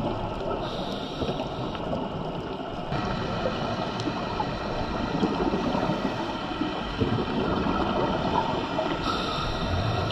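Underwater ambience picked up by a camera filming on a reef: a steady rush of water noise with no distinct events.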